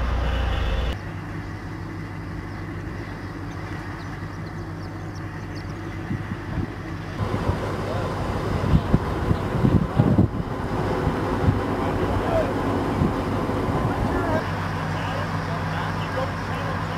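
Diesel engine of a tracked amphibious assault vehicle running steadily, with a run of sharp clanks and rattles in the middle.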